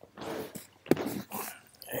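Rustling and handling noise close to the microphone, with a sharp click about a second in.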